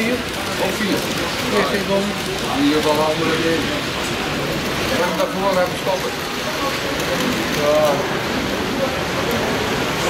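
Indistinct voices of people talking nearby over a steady hiss of background noise, with no single clear mechanical sound standing out.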